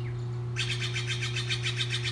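A small songbird singing a fast trill of short high notes, about ten a second, starting about half a second in, over a steady low hum.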